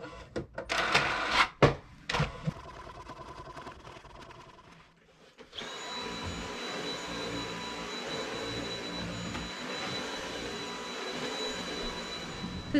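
A few sharp clicks and knocks in the first couple of seconds, then a cordless stick vacuum cleaner starts about halfway through and runs steadily with a high, even motor whine.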